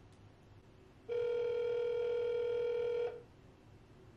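Telephone ringback tone playing from a smartphone's speaker: one steady ring lasting about two seconds, starting about a second in. It is the sound of an outgoing call ringing before it is answered.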